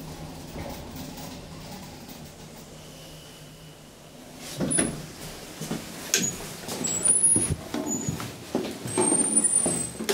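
1960s KONE traction elevator car running with a steady low hum. About halfway through come a series of loud clunks and knocks with short high squeaks as the car arrives, the sliding doors open and people step out.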